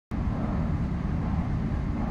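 A steady low rumble of background noise, like distant traffic, which starts abruptly right at the beginning and holds even.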